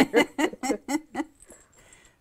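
A woman laughing: a quick run of about six short chuckles that tails off after a second or so.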